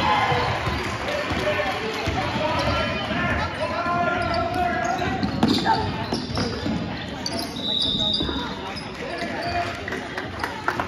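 A basketball being dribbled on a hardwood gym floor during a game, with players and spectators shouting throughout and a short high tone about three-quarters of the way in.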